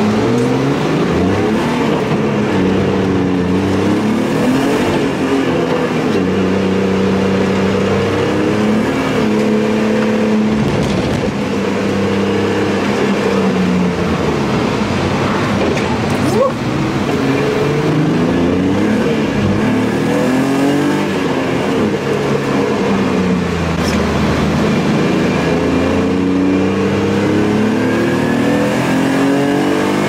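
BMW E30's engine heard from inside the cabin while being driven hard on a wet race track, the revs climbing and then dropping back with each gear change over and over. A single sharp click about halfway through.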